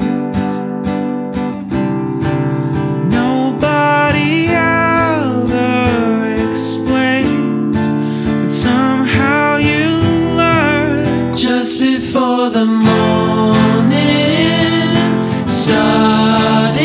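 Acoustic guitars playing a song with a man singing over them.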